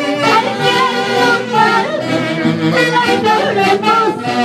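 Live Peruvian Andean folk band playing loudly: a section of saxophones with harp and violin, and a woman singing over them into a microphone.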